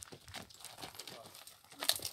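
Horse hooves and a man's footsteps crunching irregularly on dry dirt and scattered straw as a young mare is led at a walk, with one sharper hoof strike near the end.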